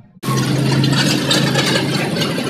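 Loud, steady street noise picked up by a phone microphone outdoors: a rushing hiss over all pitches with a steady low hum underneath. It starts abruptly a moment in.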